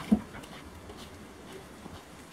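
A dog gives two short barks right at the start, then light taps of running steps on concrete.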